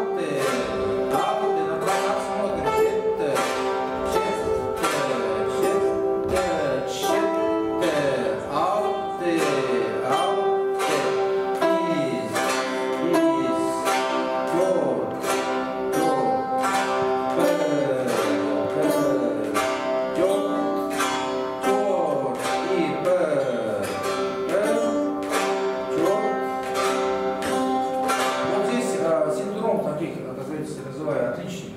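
Several chatkhans, Khakas plucked board zithers, played together in a practice exercise. Plucked notes come steadily, about two a second, and ring on. Many of them slide down in pitch.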